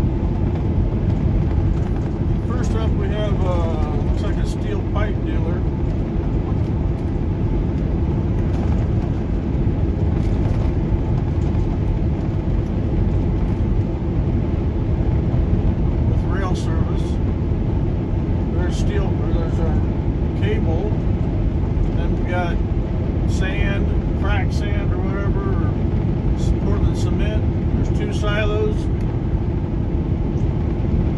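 Steady engine drone and road noise inside a moving semi-truck's cab, with a constant hum over it.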